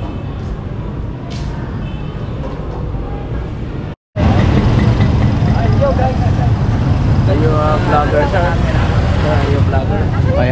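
Steady low ambient hum inside a church, then after a cut, louder street noise of motorcycles and motorcycle tricycles running, with people's voices mixed in.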